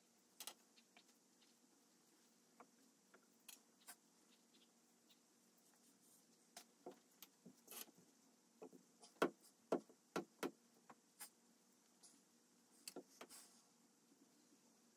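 Near silence broken by scattered light taps and knocks of clay mugs and hand tools being handled on a work table, with a run of four louder knocks about nine to ten and a half seconds in.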